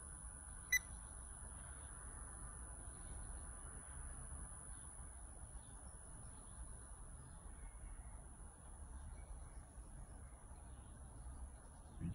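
A single short electronic beep less than a second in, then faint steady room tone with a thin high whine.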